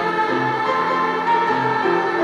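Large youth choir singing in harmony, holding long chords, with piano accompaniment.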